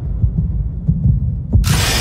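Trailer sound design: low, pulsing bass throbs with a few faint clicks. About a second and a half in, a sudden loud rush of noise hits, like a blast of icy wind and snow.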